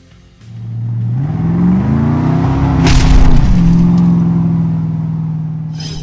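Outro sound effect: a low droning tone rises in pitch and swells to a loud boom about three seconds in. It then settles into a steady hum that slowly fades.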